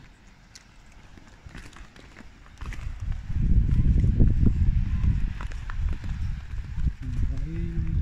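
Footsteps going down concrete outdoor steps, with a heavy, uneven low rumble on the phone microphone from about three seconds in.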